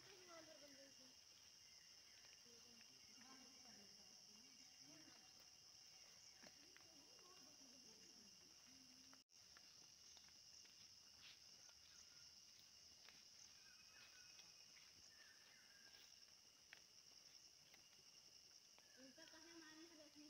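Faint steady high-pitched drone of forest insects, with faint distant voices now and then. The sound drops out for a moment about nine seconds in.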